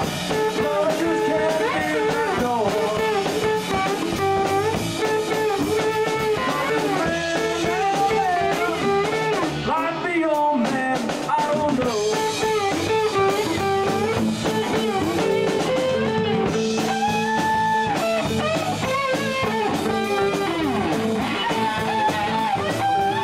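Live band playing electric guitars over a drum kit, the lead lines bending between notes, with a brief drop-out in the sound about halfway through.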